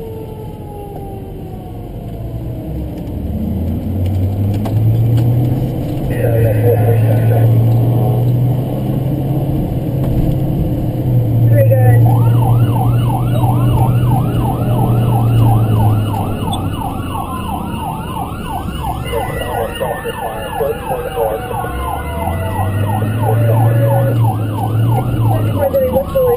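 Emergency vehicle sirens on a response run. A slow falling wail gives way about halfway through to a rapid yelp, repeating a few times a second, over a low steady drone.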